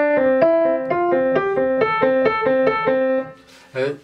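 Acoustic grand piano playing a quick run of melodic intervals, about four notes a second, a repeated lower note alternating with upper notes that step upward. The run stops a little after three seconds in.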